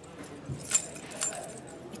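Small metal pieces jingling in a hand, with two brighter jingles about half a second apart near the middle.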